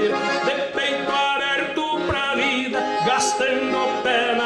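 Piano accordion playing the instrumental break of a vaneira, the gaúcho dance tune, in quick runs of notes.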